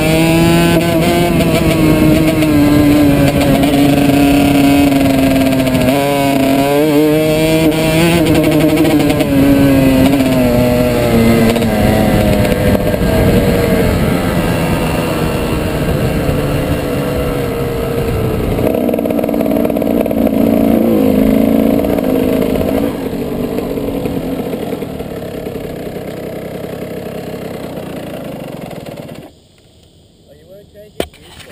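Kawasaki KX125 single-cylinder two-stroke dirt bike engine revving up and down under a rider for the first dozen seconds. The revs then fall off and run lower through the second half, and the engine sound stops abruptly about a second before the end.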